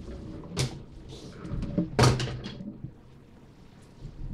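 Small cardboard box being handled and opened, with two sharp knocks about half a second and two seconds in, the second the louder, and light rustling between them.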